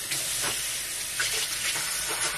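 Bathroom sink tap running, a steady rush of water that starts abruptly.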